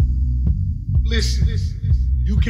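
House music playing in a DJ mix: a heavy bassline under a regular kick drum, with a brief higher-pitched sound about a second in.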